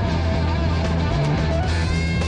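Live rock trio playing: electric bass guitar holding a heavy low line under electric guitar with bending notes and drums with cymbals.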